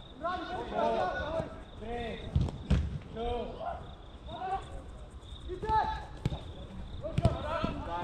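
Players shouting across an outdoor astroturf soccer pitch, with the dull thuds of a football being kicked: a pair about two and a half seconds in, then a few more near six and seven seconds.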